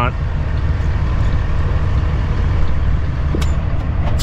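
Cummins ISX diesel of a 2008 Kenworth W900L running steadily at low speed, heard from inside the cab as a low rumble. A single light click comes near the end.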